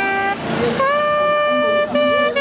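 Solo saxophone playing a melody: a couple of short notes, then a long held note that begins a little under a second in with a slight upward slide and lasts about a second.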